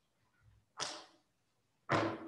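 Two short breaths close to the microphone, about a second apart, the second louder; each starts suddenly and fades within half a second.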